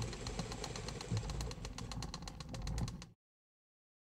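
Film projector running, its mechanism clattering in a rapid, even stream of clicks over a low rumble, cutting off suddenly about three seconds in.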